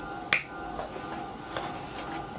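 A 14-pin changeover relay clicking once as it switches over, followed by a faint steady hum.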